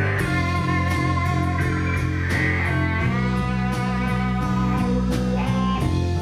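Live rock band playing an instrumental passage: electric guitar over a steady bass line, drums with regular cymbal hits, and keyboards.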